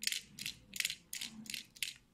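Small plastic digital pedometer being handled: about seven short, dry clicks and scrapes at irregular intervals.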